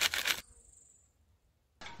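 Hot water poured from a kettle splashing onto a bicycle chain in a plastic sieve; it cuts off suddenly less than half a second in, leaving near silence.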